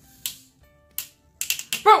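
Small plastic cups and a drink can clicking and tapping on a wooden tabletop: a few separate sharp clicks, then a quick cluster near the end. A voice says "boom" at the very end.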